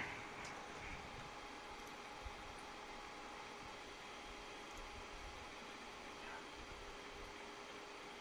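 Faint steady hiss with a low, even hum: room tone with no foreground sound, broken only by one faint click about two seconds in.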